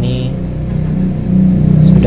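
A motor engine running with a low, steady drone that grows louder near the end.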